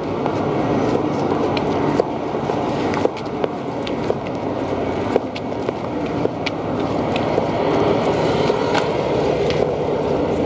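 Camcorder handling noise: a steady rustling rumble with scattered sharp clicks and knocks as the camera is carried about, pointing at the pavement.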